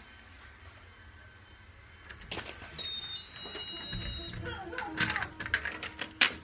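A front door's latch clicks and the door opens, letting in a brief high squeal, children's voices and music from inside the house. A few knocks from the door follow near the end.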